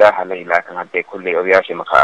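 Speech only: a man talking in Somali, the sound thin and cut off in the highs.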